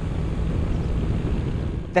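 Steady rush of wind and riding noise on the rider's onboard microphone while the BMW S 1000 XR is ridden at speed. It cuts off abruptly near the end.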